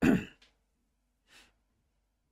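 A man's short voiced sigh close to the microphone, falling in pitch and fading quickly, followed by a faint breath about a second later.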